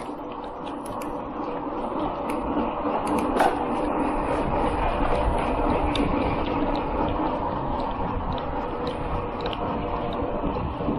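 Wind rushing over the camera microphone with tyre noise from a bicycle rolling on asphalt, growing louder over the first few seconds as the bike picks up speed, then holding steady.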